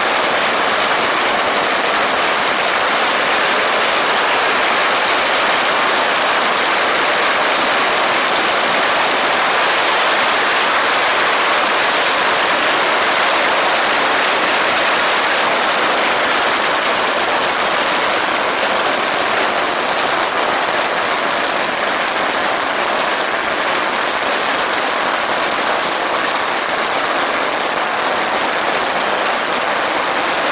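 Strings of red firecrackers going off nonstop, their rapid bangs merging into a loud, dense crackle that never lets up.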